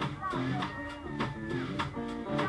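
Rock band playing live without vocals: electric guitar chords over a drum kit, with regular sharp drum and cymbal strokes.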